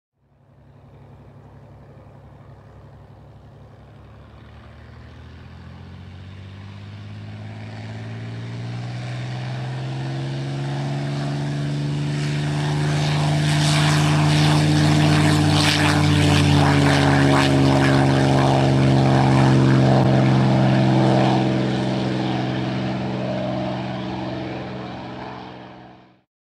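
Propeller airplane engine approaching, growing steadily louder to a peak in the middle of the pass, its pitch bending gently up and then down, then fading away before cutting off suddenly at the end.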